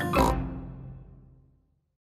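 The closing note of a cartoon theme tune, with a cartoon pig's snort right at its start. The music then rings out and fades to silence about three-quarters of the way through.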